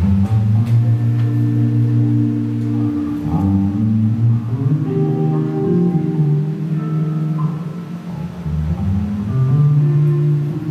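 A jazz quartet playing live, with the electric bass to the fore: long held low notes for about three seconds, then a moving line of higher notes.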